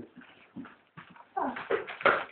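Red Setter dog sounds, faint and scattered at first and louder from about a second and a half in, with a person's brief "oh".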